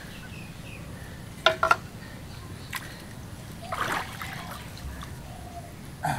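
Water poured from a plastic bottle trickling and splashing into a basin holding freshly caught fish, with two or three sharp knocks about a second and a half in and a splash of water about four seconds in.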